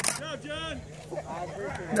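People talking in the background at moderate level, with one sharp click right at the start.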